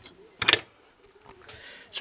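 A few sharp metallic clicks from pliers working a capacitor out of a hand-wired circuit board, the loudest a brief clatter about half a second in.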